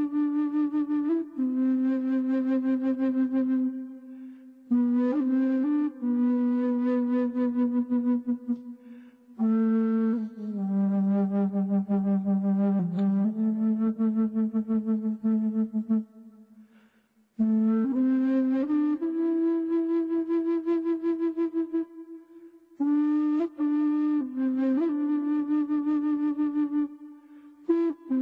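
A flute playing a slow melody of long held notes with a wavering, vibrato-like pitch, in phrases of a few seconds broken by short breathing pauses. The piece is played for relaxation, its pace matched to calm breathing.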